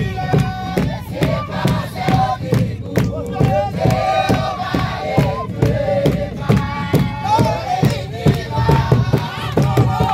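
A congregation singing a kigooco praise song together, with group shouts, to a steady beat on large cowhide-skinned hand drums.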